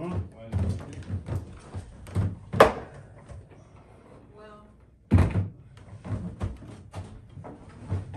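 Knocks and thumps of a blanket-wrapped upright piano being tipped back onto a wooden piano board and set down on a wheeled dolly. Two loud thumps stand out, about two and a half and five seconds in.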